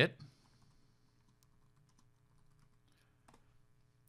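Faint clicks of typing on a computer keyboard, scattered and uneven, with one slightly louder keystroke about three seconds in.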